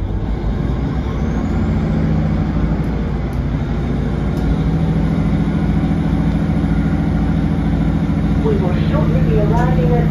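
Interior of a Class 150 Sprinter diesel multiple unit: the underfloor diesel engine runs with a steady low drone that grows louder over the first couple of seconds as the train works under power. A faint high whine rises slowly in pitch beneath it.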